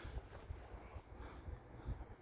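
Faint, uneven low rumble of wind buffeting the microphone, with a light hiss.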